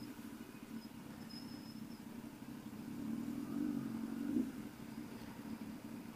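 Kawasaki ZX-10R inline-four engine running at low speed in slow traffic, a steady low hum that rises briefly about three to four seconds in and then settles.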